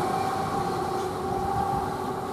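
Regional express train pulling away, its electric locomotive at the rear giving a steady whine over the rumble of the train, slowly fading as it recedes.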